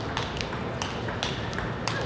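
Table tennis rally: the celluloid ball clicking in quick alternation off the table and the players' rubber-faced paddles, a series of sharp clicks a few tenths of a second apart.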